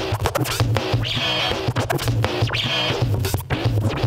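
DJ scratching a record on a turntable over a beat with a steady bass pulse about twice a second, the scratches chopped in and out in quick cuts at the mixer.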